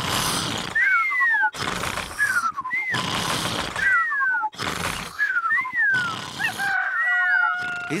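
Cartoon piglets snoring in their sleep: a rasping snort on each breath in and a high falling whistle on each breath out, repeating about every second and a half.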